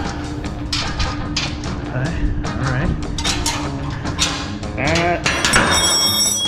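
Background music with a steady beat and a held tone, with a voice-like sliding sound near the end.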